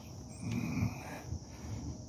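Steady, high-pitched insect chorus of a summer woodland, with a brief steady tone lasting under a second, about half a second in.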